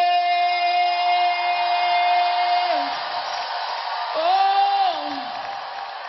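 A woman singing a long, steady held note into a microphone over crowd noise. It breaks off about three seconds in, and about a second later she sings a shorter note that slides down at the end.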